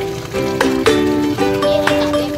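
Background music: a light instrumental tune whose notes change every few tenths of a second.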